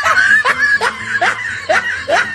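A person laughing in a steady run of short, rising 'ha' syllables, about two or three a second.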